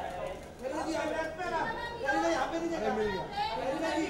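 Crowd chatter: several people talking over one another.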